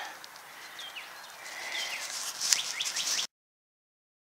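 Wild birds chirping in short downward-sliding calls over a crackly rustle that is loudest near the end. The sound cuts off abruptly to silence a little after three seconds in.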